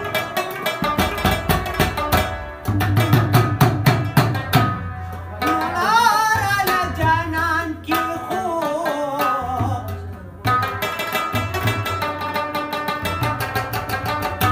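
Pashto folk music: a rabab plucked in fast runs over hand-struck manga (clay pot drum) beats. A man sings a wavering, ornamented phrase from about five seconds in to about ten seconds, after which the rabab and pot drum carry on alone.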